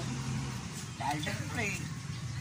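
Speech, with a short stretch of talking about a second in, over a steady low engine hum.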